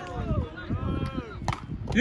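A volleyball struck by hand, one sharp slap about one and a half seconds in, over background voices.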